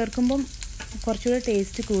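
Chopped shallots and seeds sizzling in hot oil in a pan, a steady frying hiss. A voice talks over it in short phrases and is the louder sound.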